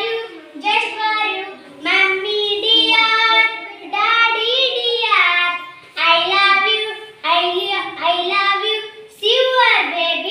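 Young children singing an action rhyme in short phrases about a second long, with brief breaks between them.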